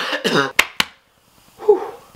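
A man's voiced sound falling in pitch, then two quick, sharp coughs a little after half a second in. After a short pause comes a brief voiced sound near the end.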